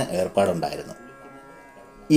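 A voice narrating over faint background instrumental music; the speech stops about a second in, leaving only the quiet music.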